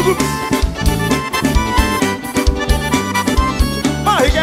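Forró band's instrumental break: accordion melody in held notes over bass and a steady drum beat, with no singing.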